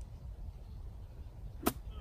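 A golf iron strikes a ball off turf once, a single sharp crack at impact about a second and a half in.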